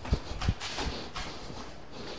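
Jogging footsteps on a hard floor: several quick thuds about a third of a second apart in the first second, then only a faint steady hiss.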